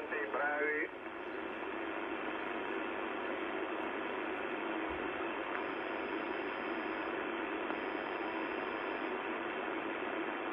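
Yaesu FRG-7700 communications receiver playing steady shortwave band noise, a flat static hiss, through its speaker on an empty frequency, after a voice transmission cuts off about a second in.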